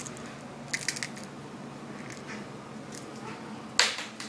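A few quick light clicks about a second in, then one sharp, loud click near the end.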